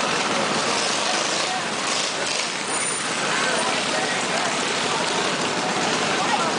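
Several small minibike engines running together, mixed with crowd chatter.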